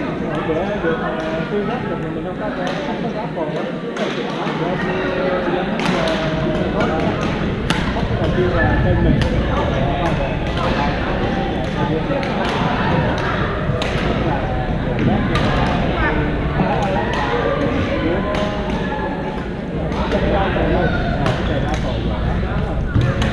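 Sharp, irregular smacks of badminton rackets hitting shuttlecocks on several courts, over steady overlapping chatter of many players in a large, echoing gym.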